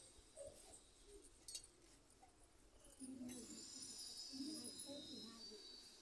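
Quiet, indistinct chatter of several women's voices, with a single sharp metallic clink about a second and a half in, like steel puja utensils being set down.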